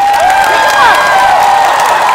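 Studio audience applauding, with many voices cheering over the clapping.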